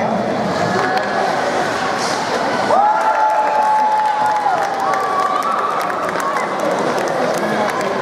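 Ice-rink crowd noise with some cheering and clapping. About three seconds in, a long tone slides up and holds steady for nearly two seconds, and a second, higher held tone follows shortly after.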